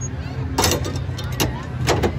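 Steady low rumble of a fairground teacup ride running, with three short sharp knocks about half a second, one and a half and two seconds in.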